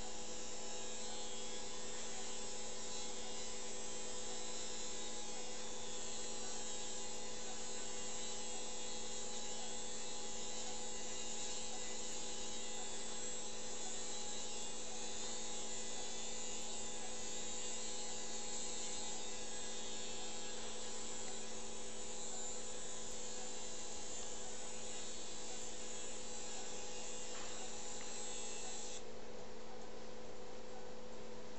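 Powered arthroscopic burr running steadily while it shaves bone at the femoral head-neck junction: a constant motor hum with a fixed whine and a high hiss. The high hiss cuts off near the end while the hum carries on.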